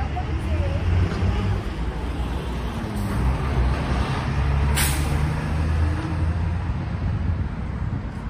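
Coach bus engine running with a low drone as it drives by in street traffic. A little after the middle comes one short, sharp air-brake hiss.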